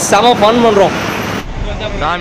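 Men's voices over city street traffic noise. About one and a half seconds in, this gives way abruptly to a low, steady traffic rumble.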